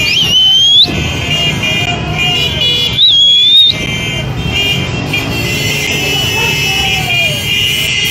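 A column of motorcycles riding past with engines running, under steady high horn-like tones and two loud, shrill rising whistles, one at the start and one about three seconds in.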